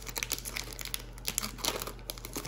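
Foil trading-card pack wrapper crinkling as the cards are slid out of it: a run of irregular small crackles.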